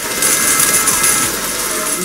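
Loud pachinko-parlor din: a dense clatter of many steel pachinko balls mixed with music from the machines.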